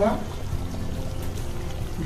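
Thick curry gravy bubbling as it simmers in an open pan on a gas burner, a steady low sound, with quiet background music.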